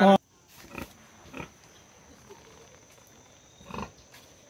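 A pig grunts softly a few times: short low grunts about a second in and again near the end. A brief loud voice cuts off at the very start.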